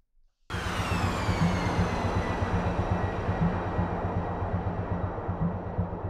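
Steady engine rush of a jet aircraft in flight with a faint high whine and a pulsing low rumble. It starts suddenly about half a second in.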